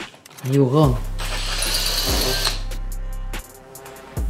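Makita cordless drill boring a hole into the wall. It runs steadily for about two and a half seconds from about a second in and stops shortly before the end.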